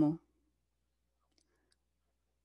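The end of a spoken phrase in Portuguese, then a pause of near silence with two faint ticks.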